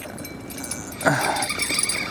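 A fishing reel being cranked as a hooked catfish is reeled in, with faint high metallic jingling from the rod's bell. A short whine-like vocal sound comes about a second in.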